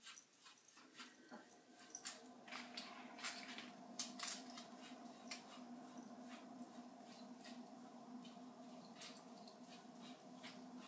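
Faint ticks and scratches of a paintbrush working paint onto a metal pizza pan, with a steady low hum setting in about a second in.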